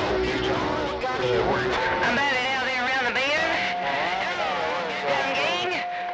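CB radio receiver on channel 28 (27.285 MHz) with several distant stations coming in on skip over each other: garbled, warbling voices mixed with steady whistle tones.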